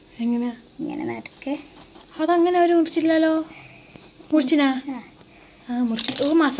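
Speech: a person talking in several short phrases, with brief pauses between them.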